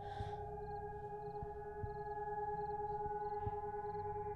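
Civil-defence siren holding a steady pitch after winding up, heard from inside a house, over a low rumble.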